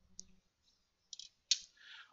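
Drawing tools being handled on paper: a few light clicks, then one sharp click about one and a half seconds in as a plastic set square is laid on the drawing sheet, followed by a brief rustle.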